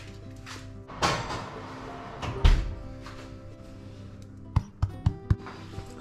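Soft background music, with a swish about a second in and a heavy thump about two and a half seconds in as the loaf tin goes into the oven and the oven door is shut. A few light clicks follow near the end.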